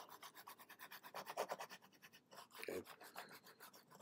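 Faint, fast rubbing and scratching of a computer pointing device scrubbed back and forth across its pad while painting brush strokes, many short strokes a second.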